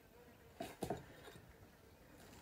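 Quiet room tone with two faint, short clicks about a quarter second apart, a little over half a second in.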